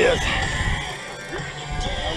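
Hard rock music playing from a boat radio, with a low rumble underneath.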